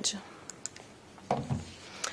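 Two light, sharp clicks close together about half a second in, then a soft low thud a little after the middle, over quiet room tone.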